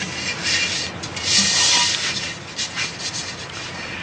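Hands rubbing and scraping on a ceramic pot, in several short stretches, the longest about a second in.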